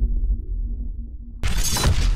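Logo-intro sound effects: a deep, low rumbling hit with a faint held tone, then about a second and a half in a sudden loud, bright crash-like burst.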